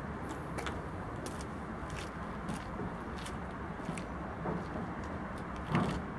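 A steady low vehicle rumble with scattered faint clicks, and a short thump near the end.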